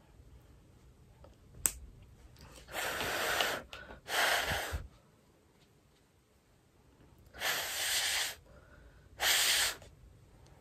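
A person blowing out four short puffs of breath, each under a second long, with a single sharp click just before the first.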